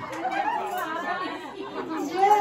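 Several women's voices talking over one another in a group, between sung bhajan lines.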